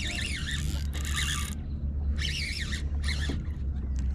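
Shimano Calcutta Conquest BFS baitcasting reel being cranked under the load of a hooked fish: a whirring of the gears in several bursts, with a wavering pitch, broken by short pauses in the winding.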